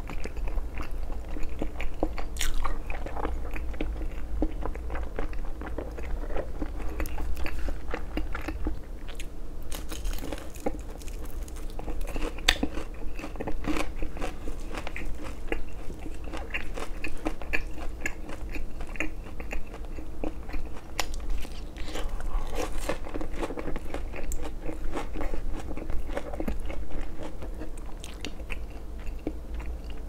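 Close-miked chewing and biting, with crisp crunches from battered Korean fried food such as a fried seaweed roll (gimmari) and wetter, chewy mouth sounds from saucy rice cakes and noodles.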